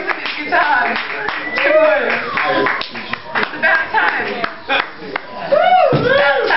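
Audience clapping in separate claps, with a woman's voice over a microphone mixed in.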